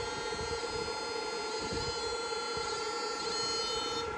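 A homemade 16-FET electrofishing inverter running with its lid closed, giving a steady electrical whine made of several constant tones.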